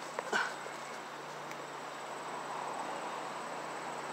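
A brief rustle and a few light clicks near the start as he pushes through dry undergrowth, then a steady, faint outdoor background noise.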